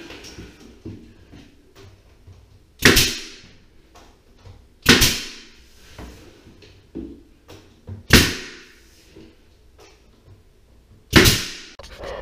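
Pneumatic nail gun on an air hose firing four times into wooden wall trim, each shot a sharp crack followed by a short hiss of exhaust air.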